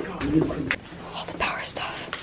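Hushed, whispered voices, then a sigh under a second in, followed by a few breathy hisses.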